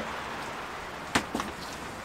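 Steady rain, with a sharp click a little over a second in and a fainter click just after.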